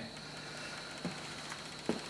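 Homemade pulse motor running on its capacitors: a faint steady hum with a thin high whine, and two small clicks, about a second in and near the end.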